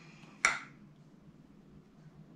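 A single short, sharp click about half a second in, from the handling of a perfume bottle, over quiet room tone.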